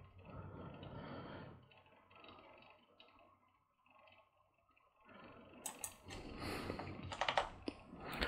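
Computer keyboard keystrokes: a quick run of short clicks in the last few seconds, after a quiet stretch, as text is edited in a code editor.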